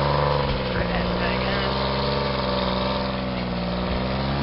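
Engine idling steadily: an even, low hum that holds one pitch, with only a slight sag in the middle.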